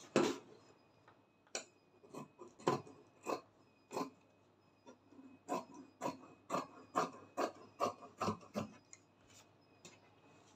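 Dressmaking scissors snipping through crepe fabric, a run of sharp separate cuts that come quicker, about two or three a second, in the second half.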